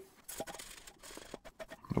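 A rag wiping acetone over steel pieces clamped in a bench vise: faint scuffing with a few light clicks, cleaning off dust and debris before TIG welding.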